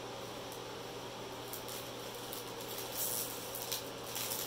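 Faint rustling and brushing of a hand on the clear plastic film covering a diamond painting canvas, a few soft scrapes, over a steady low background hum.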